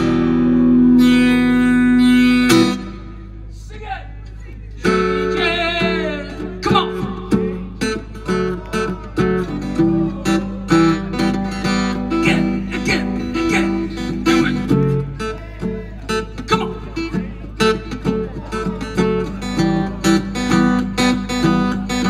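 Live acoustic guitar and voice through a PA: a long held sung note over the guitar cuts off under three seconds in, and after a short lull rhythmic acoustic guitar strumming picks up about five seconds in and carries on. A steady low electrical hum sits underneath.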